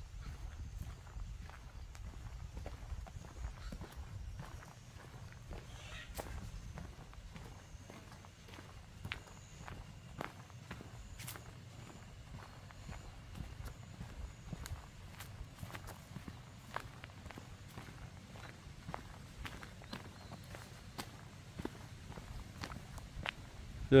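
Footsteps on gravel and a paved lane: irregular crunching steps of someone walking, over a low rumble.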